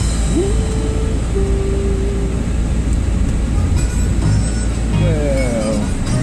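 Steady engine and road rumble of a moving car, heard from inside the car. Music plays over it, with two long held notes early on and sliding notes near the end.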